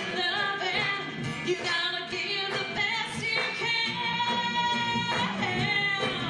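A woman singing a song live with acoustic guitar and percussion backing, holding one long note in the middle.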